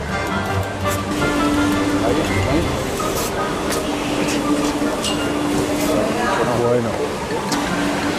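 Background music, with a few short hisses in the middle from a hand spray bottle squirting teat dip onto a dairy cow's teats before milking.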